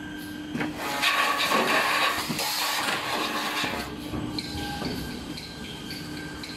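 Toilet paper rewinder machine running: a steady hum with scattered mechanical knocks and clatter, and a rushing hiss from about one to three and a half seconds in. The hum drops away after about four seconds.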